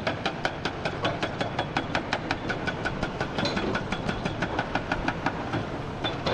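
Hydraulic rock breaker on a Hyundai HX480L excavator hammering rock in a steady rapid rhythm of about five blows a second, over the low running of excavator engines.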